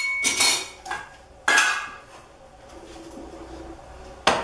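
Hard scraping and clinking of a tool against a tin of polyester body filler (massa plástica) and a ceramic tile, as a portion of filler is scooped out for mixing: a cluster of scrapes in the first second, one more about a second and a half in, then quieter.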